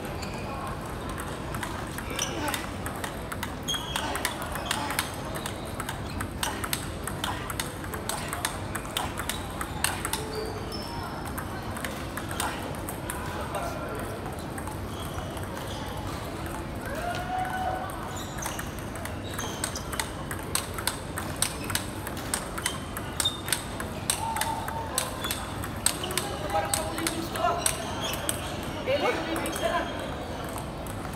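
Table tennis balls being struck by paddles and bouncing on tables: an irregular run of sharp clicks, growing busier in the second half, with voices talking.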